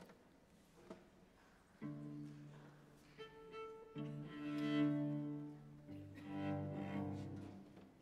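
Solo cello playing a few long, slow bowed notes, starting about two seconds in, swelling in the middle and dying away near the end.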